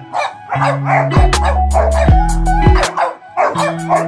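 A black French bulldog and a brown-and-white hound barking and vocalizing at each other in play, over background music with a steady, bass-heavy beat.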